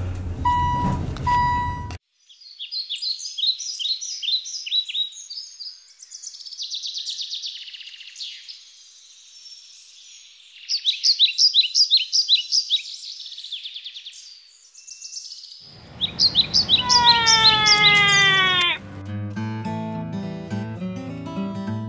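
Two short chime tones, then birdsong: bursts of rapid high chirps and trills. The song ends in a run of falling whistled notes, and acoustic guitar music starts near the end.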